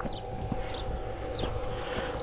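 Outdoor ambience with a few short, high, falling bird chirps over a faint steady hum and low wind rumble on the microphone.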